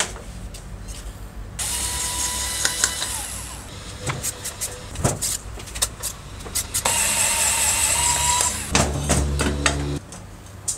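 Small electric screwdriver running in two bursts of about two seconds each, with a thin steady whine, driving screws out of an electric plane's metal housing. Sharp metal clicks and clatter fall between the runs, and a heavier low rumble of handling comes near the end.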